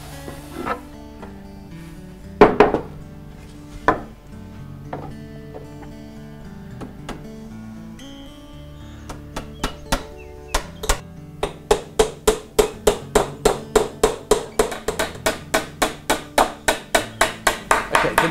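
Small hammer tapping tacks into the glued corners of a wooden canvas-stretcher frame. Two single knocks come a few seconds in, then a fast, even run of light taps, about four a second, over background guitar music.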